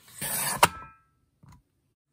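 Dahle 550 rotary paper trimmer's cutting head sliding along its rail, trimming a strip off a printed sheet, ending in a sharp click with a short ring as it hits the end of its travel.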